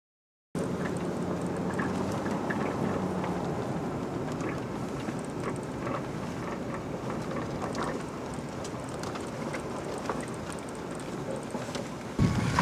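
Steady road and engine noise inside the cab of a Toyota Tacoma driving on a snow-covered highway, with scattered small ticks and rattles. It starts abruptly about half a second in.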